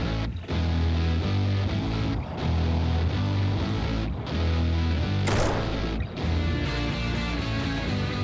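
Guitar-led background music runs throughout. About five seconds in, a single sharp crack stands out: one shot from a scoped Remington 700 bolt-action rifle in 7mm Remington Magnum, fired from a bench rest to check its zero.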